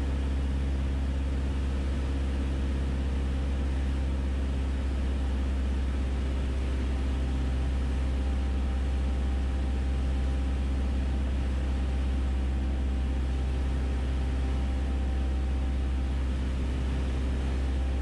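Steady drone of a 1966 Mooney M20E's four-cylinder Lycoming IO-360 engine and propeller, heard from inside the cabin: a low constant hum that holds the same pitch and level throughout.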